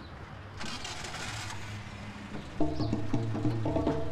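A pickup truck's engine running with a low hum, with a short hiss about a second in. Lively film music starts a little past halfway and becomes the loudest sound.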